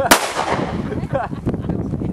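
A single pistol shot from a Kimber handgun just after the start, its echo dying away over about half a second.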